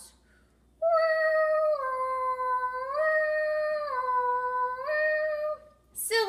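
A woman singing or humming a wordless tune on long held notes, stepping back and forth between a higher and a lower note about once a second, starting after a short pause and ending on the higher note.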